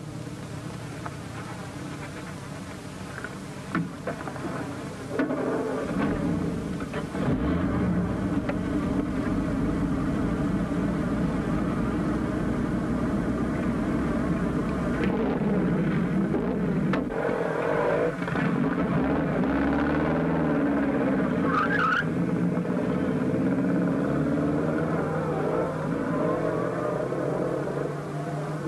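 Open touring car's engine running quietly, then revving up and pulling away about five seconds in, louder from there on. Its pitch climbs as the car gathers speed.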